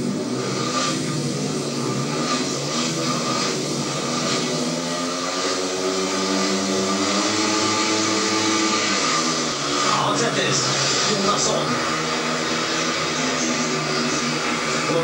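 Speedway bikes, 500 cc single-cylinder methanol-burning engines, revving together at the start gate. About ten seconds in the engine notes dip and then climb as the bikes launch from the start and accelerate away.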